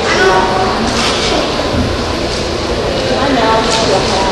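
Indistinct voices of people talking over the background hubbub of a busy indoor public space.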